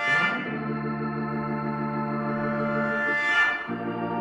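Organ playing sustained chords without drums, the chord changing at the start and again about three and a half seconds in.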